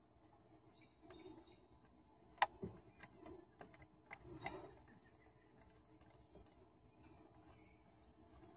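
Faint ticks and handling sounds as a small metal fitting is worked into the underside of a wooden tiller, with one sharp click about two and a half seconds in.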